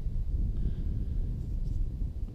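Wind buffeting the microphone: a low, unsteady rumble with no other distinct sound.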